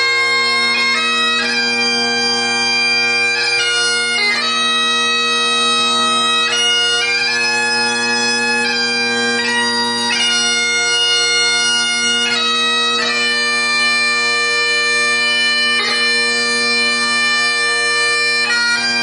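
A single bagpiper playing a tune: a melody of changing notes over steady, unbroken drones.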